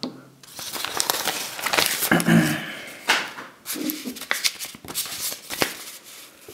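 Paper rustling and crinkling as a mailing envelope and a folded paper document are handled, with small sharp clicks and taps, busiest in the first half.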